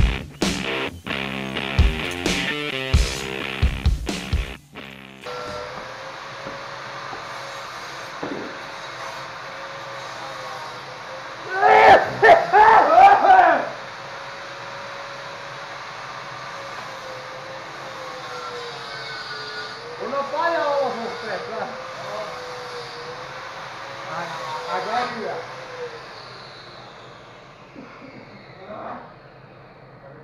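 Rock music with electric guitar for the first few seconds, then a workshop machine running steadily with one held tone, under loud voices around the middle; the machine sound fades out near the end.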